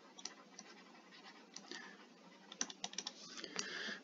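Faint taps and scratching of a stylus writing on a tablet screen: scattered clicks at first, then a denser run of strokes in the last second or so.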